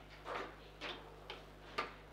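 Table football play: the ball is knocked by the plastic figures and rods clack, about four sharp knocks roughly half a second apart, the last one loudest.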